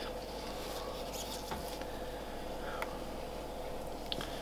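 Faint handling noise from nitrile-gloved hands moving a clutch of ball python eggs in a plastic tub, with a few light ticks, over a steady low hum.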